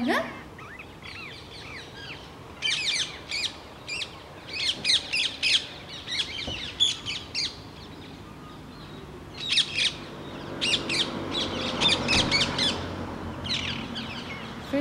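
Small songbirds singing in short bursts of quick, high chirps, several phrases a second or two apart.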